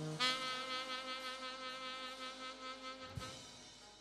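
Saxophone holding one long, steady note that starts just after the beginning and fades away gradually towards the end.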